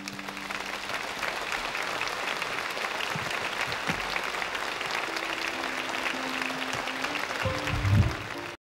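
A large theatre audience applauding steadily at the end of a song. From about five and a half seconds in, a few held notes from the band sound faintly under the clapping.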